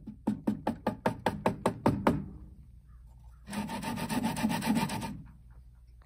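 A wooden block is rubbed back and forth on blue painter's tape spread with super glue, a quick scraping rhythm of about six strokes a second for about two seconds. Later comes a steady rushing noise lasting about a second and a half.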